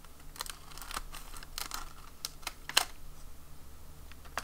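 Scissors snipping through the clear plastic bag of a packaged eraser set: a run of irregular crisp clicks and snips, the sharpest one about three-quarters of the way through.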